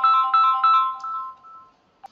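Phone ringtone: a short melody of bright chiming notes, about three a second, fading away before the end.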